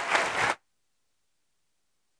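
Audience applauding, cut off suddenly about half a second in, then dead silence.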